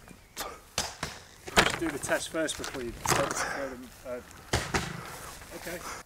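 A handful of sharp knocks and thuds, spaced irregularly, as battery string trimmers are thrown over a wooden fence and land in long grass. Short vocal exclamations fall between them.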